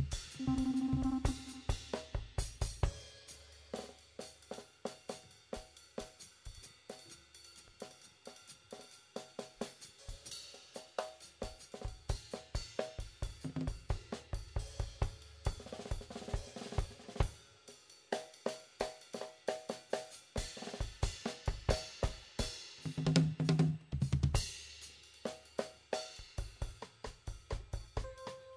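Live jazz combo playing with the drum kit to the fore: busy cymbal, hi-hat and snare strokes in quick succession, with short pitched notes from the other instruments now and then underneath.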